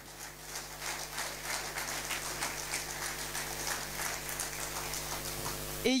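Audience applauding: dense clapping that swells at the start and cuts off abruptly near the end.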